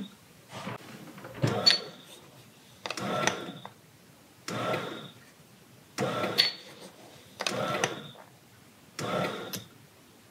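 Bread machine on its dough setting, the kneading motor running in short pulses, about one every second and a half, as it starts mixing the dough.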